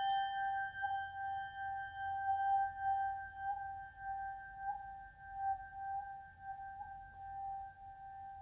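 A large hand-forged, tempered-iron tingsha cymbal ringing on after a strike with a wooden striker: one long, pure note with a few higher overtones, the highest dying away about halfway through. Its loudness swells and dips as the player holds it at his open mouth, using the mouth as a resonating chamber.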